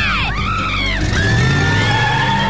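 Cartoon girls' shrieks with swooping pitch over background music, breaking off about a second in. A steady whirring cartoon spin effect follows, as a character's legs spin in place.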